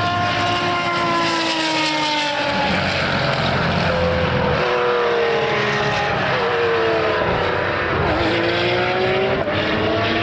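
1987 Jaguar XJR-8 Group C car's V12 engine going past at speed and pulling away through a corner. Its note falls over the first couple of seconds as it passes, then rises and falls in several shorter sweeps as it goes away.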